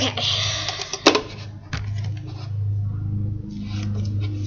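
Handling noise as a camera is moved by hand: a short rustle, then a couple of sharp knocks and small clicks over a steady low hum.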